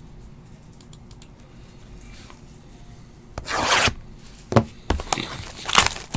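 Plastic shrink wrap being torn off a cardboard trading-card hobby box. After a quiet start, one short rip comes about three and a half seconds in, followed by a few sharp clicks and rubbing of plastic against cardboard.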